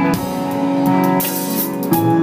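Live band music: a drum kit with repeated cymbal strokes under sustained held chords.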